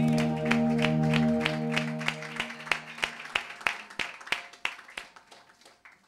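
The end of a devotional song: the accompaniment's held final chord dies away about two seconds in, while rhythmic clapping in time, about three claps a second, carries on and fades out.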